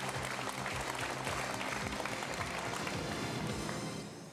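Studio audience applauding over background music, steady throughout.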